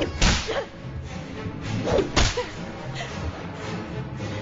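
Action film sound effects over music: sharp whip-like cracks, the loudest just after the start and about two seconds in, each trailed by a short falling whine.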